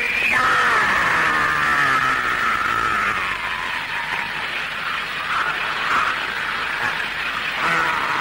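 A bamboo flute holding a high, wavering tone for several seconds, sliding slowly down in pitch, with lower cries underneath.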